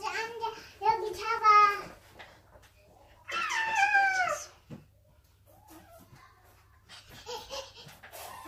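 Two toddlers squealing and babbling in high voices, with a long falling squeal about three seconds in and quieter chatter near the end.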